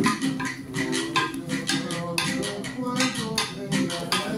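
Hand drums and improvised percussion played together in a steady rhythm, with a stepping pitched melody over the beat.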